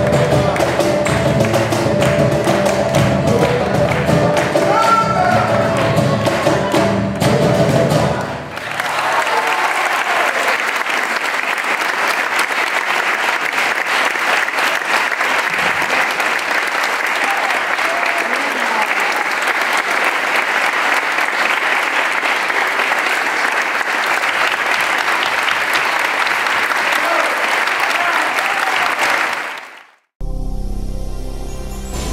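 A live Afro-Peruvian ensemble of cajones and acoustic guitar plays its last bars, stopping about eight seconds in. An audience then applauds steadily, and the applause fades out near the end.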